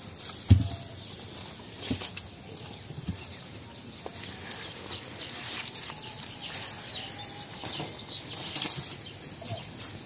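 Fired clay bricks knocking against each other as they are picked up and handled, a few separate knocks over a rustling of dry stalks.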